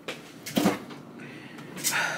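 Kitchen cupboard door opening and shutting: a click at the start, a louder knock about half a second in, and another sharp knock near the end.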